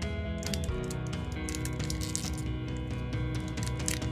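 Background music with sustained notes, over the crinkle and small crackles of a foil Pokémon booster pack wrapper being pinched and worked open by hand, a struggle to tear it.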